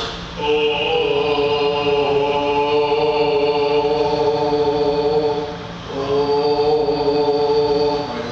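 A male tenor voice singing a vocal exercise: one long held note lasting about five and a half seconds, then, after a brief break, a second held note.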